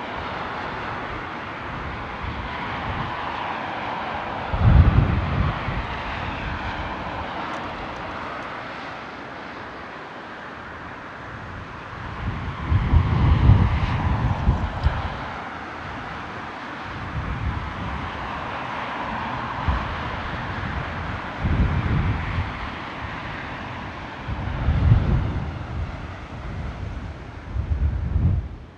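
Boeing 777-300ER's two GE90-115B turbofans running at taxi power, a steady jet whine and hiss as the airliner rolls past. Several low rumbling gusts of wind buffet the microphone, the loudest about five seconds in and again around thirteen seconds.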